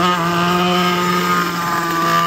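Single-cylinder four-stroke Briggs & Stratton LO206 kart engine running at high revs, held at a steady pitch. It is loud and gets loudest near the end as the kart passes close by.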